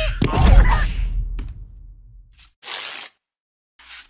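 Cartoon larvae yelling in alarm with wavering, gliding pitch over a low rumble as they are flung into the air; the yells fade out by about two seconds in. Shortly after, a brief hiss of plastic cling film being pulled from the roll.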